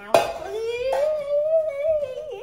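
A young girl's voice holding one long drawn-out hummed or sung note that rises slowly and then holds, after a sharp click just at the start.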